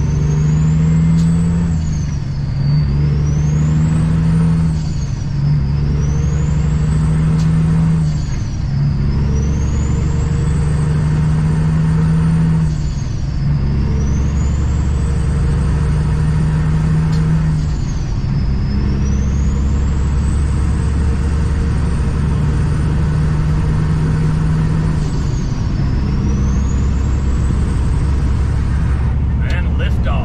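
Semi truck's diesel engine accelerating up through the gears, heard from inside the cab. The engine note and a high whine climb together in each gear and drop at each upshift, about six shifts, each gear held longer than the one before.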